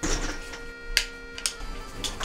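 Plastic door-curtain strips rustling as someone walks through, then clacking against each other in scattered sharp clicks, over quiet background music.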